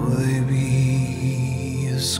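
A voice singing wordlessly over soft piano, gliding up into one long held note that lets go near the end.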